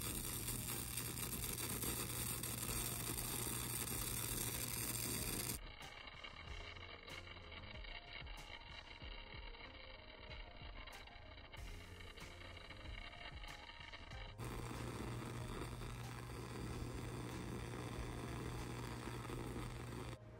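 High-frequency Tesla candle's plasma flame running, a steady hiss with a low hum under it. About five and a half seconds in it turns quieter and thinner for roughly nine seconds, then comes back at full level.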